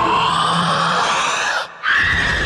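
Film sound-effect roar of the symbiote monster Venom: one long snarl whose pitch slowly rises, cutting off abruptly near the end.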